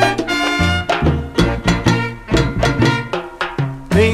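1971 salsa band recording playing an instrumental passage: a bass line of held low notes under steady percussion, with pitched band instruments above.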